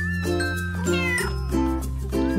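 A cat meowing, with a call that falls in pitch about a second in, over background music with a steady bass line and regular chords.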